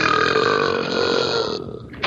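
A long, loud belch lasting about a second and a half and then trailing off: a drunk gnome's burp in a film soundtrack clip.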